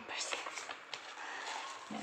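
Paper certificate card and small cardboard box being handled, a rustling of paper with a couple of light clicks. A woman's voice starts again near the end.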